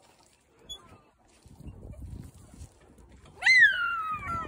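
A young child's high-pitched squeal near the end: one loud call that jumps up and then slides down, after a faint low rumble.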